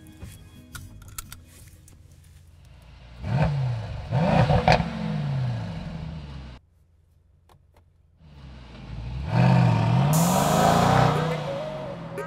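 Mercedes-AMG E63 S twin-turbo 4.0-litre V8 starting up and revving, with sharp exhaust cracks, then running on. After an abrupt cut to near silence, it is loud again as the car accelerates away, the exhaust note dropping and climbing through quick gear shifts, easing off near the end.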